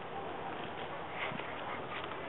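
Footsteps on a wood-chip and leaf-litter path, soft irregular crunches over a steady background hiss.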